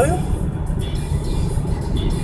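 Steady low rumble of a car's engine and tyres heard from inside the cabin while driving along a road.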